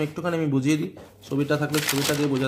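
A man talking, with a brief rustle of a paper notebook page being turned near the end.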